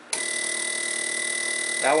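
Low-impedance fuel injector buzzing steadily as a VersaFueler peak-and-hold driver channel pulses it. The buzz starts just after the beginning, as the selector switch lands on the next channel: that channel is driving the injector correctly.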